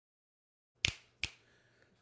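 Two sharp finger snaps about half a second apart, the first louder, breaking a moment of dead silence: a sync mark for lining up the audio with the video.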